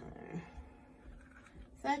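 A woman's voice trails off in a drawn-out "so" at the start, then low room tone, then her speech resumes near the end.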